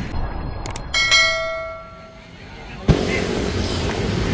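Intro sound effects for an animated subscribe button: two short clicks, then a bell-like chime about a second in that rings and fades. Near the end a sudden thump gives way to steady street noise.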